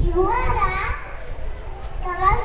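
A young child speaking into a microphone in a high-pitched voice, over a low rumbling background noise.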